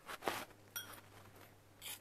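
Metal spoon stirring and breaking up freeze-dried soup squares in hot water in a bowl: a few faint, short scrapes and crunches as the squares rehydrate.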